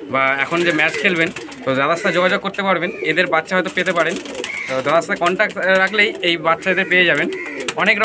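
Domestic pigeons cooing, with a man talking over them.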